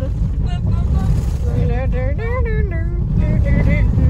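Someone humming or vocalising a wordless tune in a few phrases, over the steady low rumble of a car driving on a dirt road, heard from inside the cabin.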